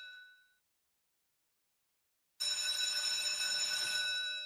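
Greyhound track bell rung twice as the hare is sent off. The first ring fades out in the first half second. After a spell of dead silence, a second ring starts sharply about two and a half seconds in and slowly fades.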